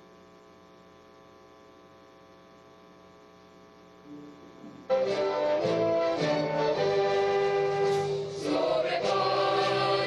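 Faint steady hum, then about five seconds in a youth choir and string orchestra start up together and sing and play a held, slow-moving choral piece.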